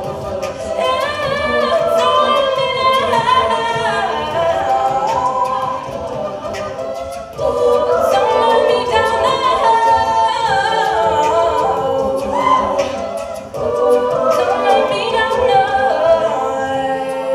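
Women's a cappella group singing in harmony, a lead voice over sustained backing chords, with vocal percussion keeping a steady beat. The singing breaks briefly between phrases about seven and thirteen seconds in.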